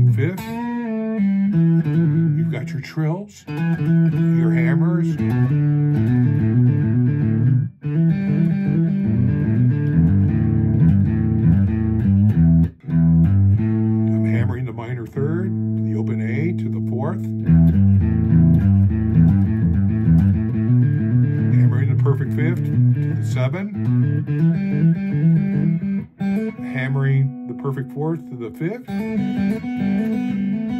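Semi-hollow electric guitar improvising an E minor blues in open position, keeping to the low open E root, with hammer-ons, pull-offs, trills, vibrato and string bends. The phrases run on with a few brief pauses.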